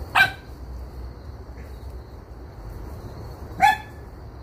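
A dog barking twice: two short, sharp barks about three and a half seconds apart.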